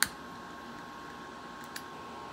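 A lighter clicks once, sharp and loud, then a second faint click comes near the end. Under both runs a faint steady hum with a thin steady tone.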